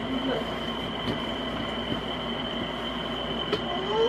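Steady background hiss and hum with a thin, high steady whine, broken by a few faint knocks.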